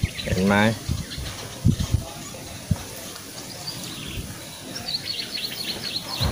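A bird chirping in a quick run of high chirps near the end, over steady outdoor background noise, with a few soft low thumps earlier on.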